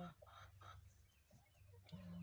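Faint, scattered clucks from a broody hen disturbed on her nest.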